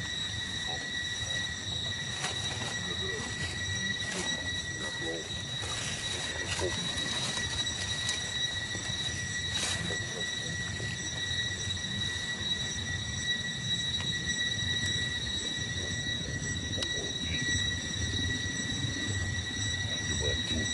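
A steady high-pitched whine with overtones, unchanging throughout, over a low rumbling background, with a few faint brief wavering calls in the first seven seconds.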